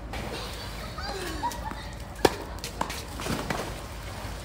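A tennis ball struck hard by a racket, one sharp pop a little over two seconds in, followed by a couple of fainter knocks of shots or bounces.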